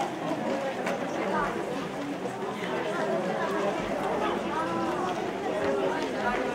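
Crowd chatter: many people talking at once as they walk in a procession, with scattered footsteps.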